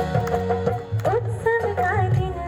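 A song with instrumental accompaniment and a steady drum beat; a woman's singing voice, amplified through a microphone, comes in about a second in.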